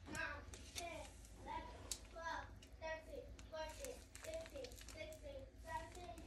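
Faint children's voices talking in the background, with a few light clicks.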